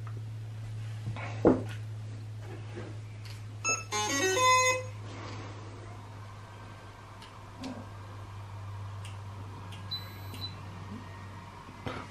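Autel Evo drone powering on: a click, then a short electronic start-up tune of quick pitched beeps about four seconds in, and a brief high beep near ten seconds.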